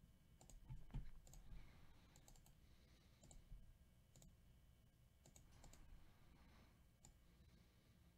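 Near silence broken by faint, irregular clicks of a computer mouse and keyboard, a dozen or so single clicks spread unevenly.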